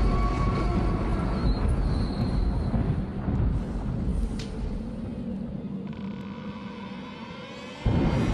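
Low, dark rumbling drone of an intro soundtrack, fading gradually. A sudden louder rumble hits just before the end.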